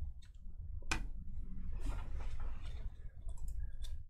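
Hard plastic graded-card slab handled in the fingers: a sharp click about a second in and a few lighter clicks near the end, over a low steady hum.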